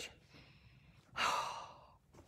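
A woman's long breathy sigh, one exhale starting about a second in and fading away.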